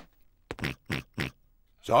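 Cartoon pig characters giving a few short, quick snorts, the cartoon pigs' snorting laugh.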